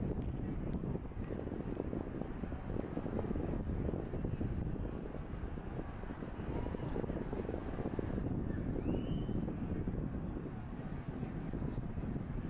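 Steady low rumble of wind and movement noise on a camera microphone carried on a moving bicycle, with a brief faint high chirp about nine seconds in.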